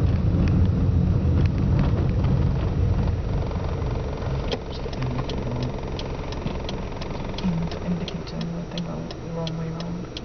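Suzuki Swift heard from inside the cabin: engine and road rumble while driving, fading after about four seconds as the car slows. A low steady engine tone follows, with the turn-signal relay ticking regularly from about halfway on.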